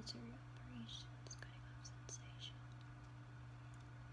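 A woman's voice murmuring very softly in the first second, followed by a quiet pause with a few faint clicks over a steady low hum.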